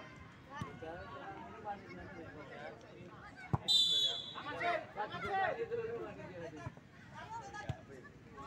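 Voices of players and spectators calling and chattering across an outdoor football field. About three and a half seconds in there is a sharp thump, followed at once by a short, high whistle blast.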